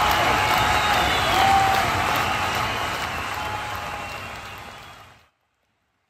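Crowd applauding and cheering, with a few shouts or whistles over the clapping, fading away and ending about five seconds in.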